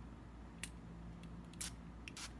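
Small plastic pump spray bottle spritzing fragrance oil onto the back of a hand: two short, faint hissing spritzes about a second apart, the second longer.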